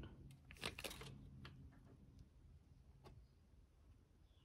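Near silence, with a few faint clicks and scrapes, mostly in the first second, as a freshly double-flared 3/16-inch brake line is taken out of a brake-line flaring tool's clamp.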